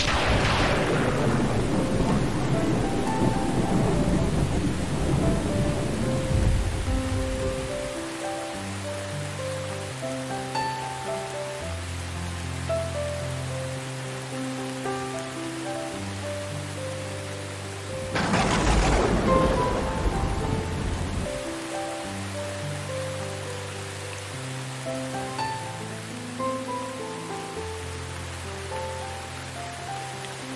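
Two rolls of thunder, one crashing right at the start and rumbling away over about eight seconds, the other about eighteen seconds in and shorter, over steady rain. Slow instrumental music with long held notes plays underneath throughout.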